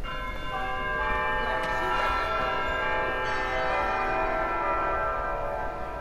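A cluster of bell-like chime tones, entering one after another over the first second and ringing on together as a held chord that thins out near the end.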